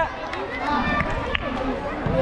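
Several people's voices talking and calling out outdoors, with one short sharp tick a little past the middle.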